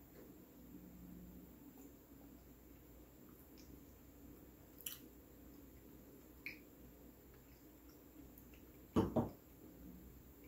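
Faint mouth sounds of wine being sipped and tasted, with a few small clicks, then a short, louder double sound near the end.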